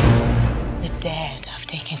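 Trailer soundtrack: a deep boom at the start that dies away under music, with whispered voices about a second in and a woman's voice beginning to speak near the end.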